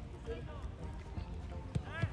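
Children's football drill on artificial turf: distant children's voices calling out over running feet and a low outdoor rumble, with a single thump of a ball being kicked near the end.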